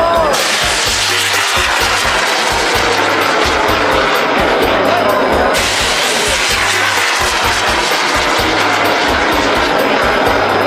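Steady rushing roar of a bang fai (bamboo-style black-powder rocket) firing from its launch tower, heard over loudspeaker festival music with a regular bass beat and crowd voices.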